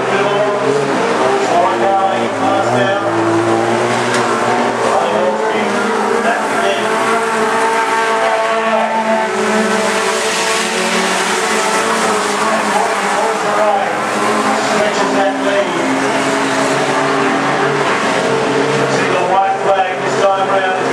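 Several junior sedan speedway cars' four-cylinder engines running flat out around a dirt track, pitches rising and falling as the cars power through the turns and down the straights.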